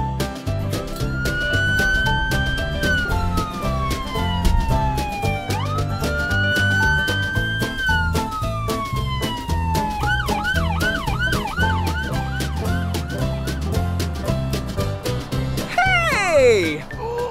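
A police siren over upbeat music with a steady beat. It sounds two slow rising-and-falling wails, then, about ten seconds in, switches to a quick yelp of two or three cycles a second for a few seconds.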